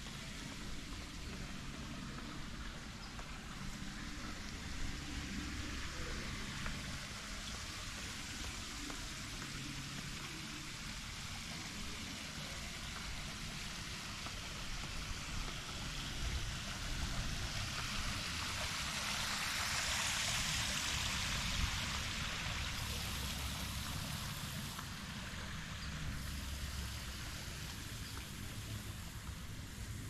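Water splashing in a tiered courtyard fountain: a steady hiss that grows louder about two-thirds of the way in, then fades again. A low, uneven rumble runs underneath.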